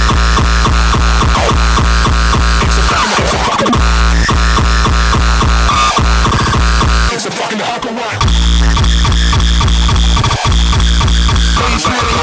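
Uptempo hardcore electronic dance music with a fast, distorted kick drum. About seven seconds in, the kick drops out for about a second in a short break, then comes back in.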